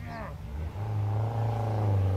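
A Peugeot hatchback's engine running as the car approaches, growing clearly louder about two-thirds of a second in.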